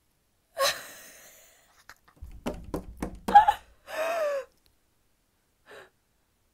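A young woman's voice: a sharp breathy gasp, then a quick run of short laughs, about four a second, ending in a drawn-out falling "aah".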